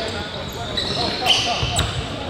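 Basketballs bouncing on a hardwood gym floor, with high-pitched sneaker squeaks and players' voices in a large gym hall.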